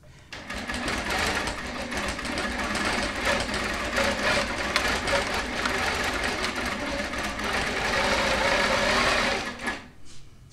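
Longarm quilting machine stitching a short test patch with metallic thread: a steady, fast needle rattle that starts just after the button press and stops suddenly near the end. It is a tension test, and the result shows the top tension needs to come up.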